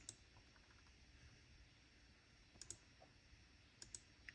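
Faint computer mouse clicks against near silence: a click right at the start, then two quick pairs of clicks, one a little past halfway and one near the end.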